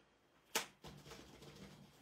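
A plastic stencil being laid onto a painted journal page, with one light knock about half a second in, then faint handling noise.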